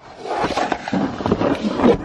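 A person's voice making a rough, wordless growling noise.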